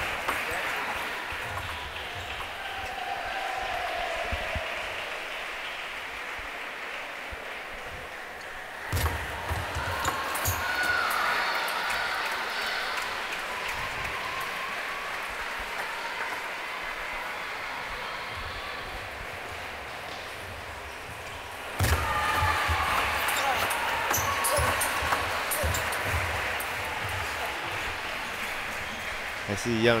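Table tennis ball clicking off bats and table over the steady crowd noise of a sports hall, with shouts and cheering from the team benches breaking out suddenly about nine seconds in and again about twenty-two seconds in, each slowly dying away.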